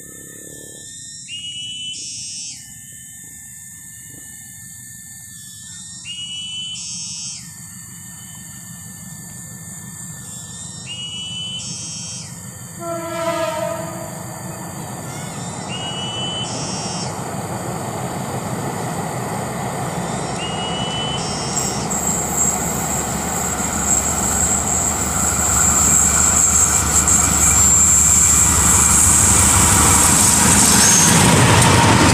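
Diesel-hauled passenger train approaching: a single short horn blast about thirteen seconds in, then the locomotive's engine and the wheels on the rails growing steadily louder as it draws near and passes, loudest near the end.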